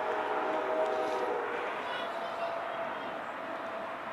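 Distant CSX freight locomotive's multi-chime air horn sounding a chord of several steady notes, cutting off about a second and a half in, with one fainter note lingering briefly after.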